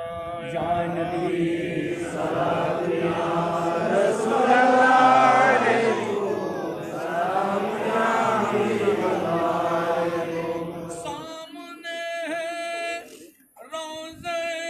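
A group of men chanting a devotional salam together in unison, as in the standing (qiyam) part of a milad. About eleven seconds in, the chorus thins, and a single voice carries on alone.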